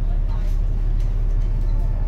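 Steady low engine and road rumble of a moving bus, heard from inside on the upper deck, with faint voices in the background.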